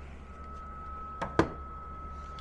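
Heat gun and electric space heater running: a steady hum with a thin, steady high whine. Two sharp clicks come a little past one second in, the second louder.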